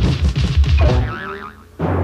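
Cartoon background music with a springy, wavering boing sound effect about a second in. The sound dips briefly before the beat comes back near the end.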